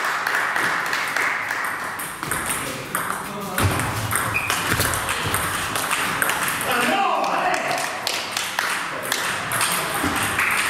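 Table tennis rally: a celluloid-type ball clicking sharply off bats and table over and over, with more ball clicks from other tables in play in the same hall. Voices in the background.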